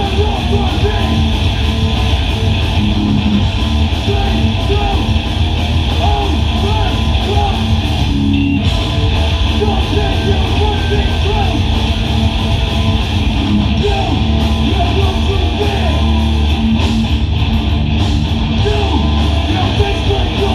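Hardcore band playing live: distorted electric guitars, bass and drums, loud and continuous.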